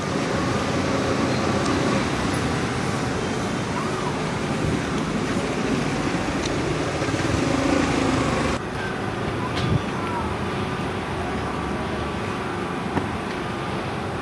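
Steady street background noise: distant traffic and faint voices, dropping a little in level about two-thirds of the way through, with a short sharp click shortly after.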